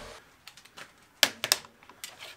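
A few sharp clicks and knocks of tools being handled on a workbench. They are faint at first, then a loud one about a second in, followed quickly by two more.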